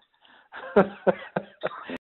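A man clearing his throat several times in sharp strokes on a recorded phone call, with the thin, narrow sound of a telephone line; the recording cuts off suddenly at the end.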